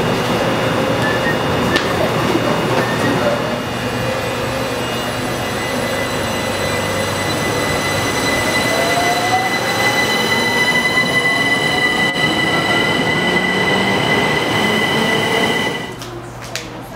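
Southern electric multiple-unit train pulling away from the platform: a steady high whine from its electrics, joined about six seconds in by a whine that rises in pitch as it accelerates. The sound cuts off suddenly at the very end.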